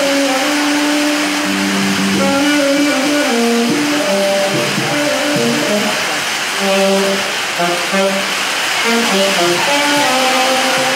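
Live improvised jam: a saxophone plays a wandering melodic line of held and stepping notes, with electric bass underneath, all over a constant rushing hiss.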